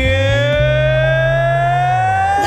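A male singer holds one long high note that slowly rises in pitch, sung over low sustained backing chords.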